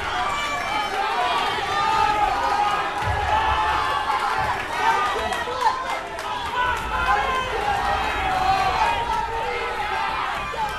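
Spectators in a gym calling out and chattering during a wrestling bout, many overlapping voices with no single one standing out. A few sharp knocks cut through about five to six seconds in.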